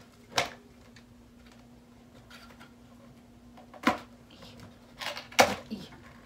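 Cardboard box being pulled open by hand: a few sharp snaps and crackles of the flaps, one about half a second in, another near four seconds, and a quick cluster near the end.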